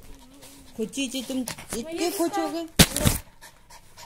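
Small dog panting, tired out from play, close to the microphone, with a woman's voice over it and a brief loud noise a little under three seconds in.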